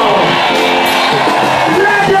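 Worship music with a crowd of voices singing, including some long held notes.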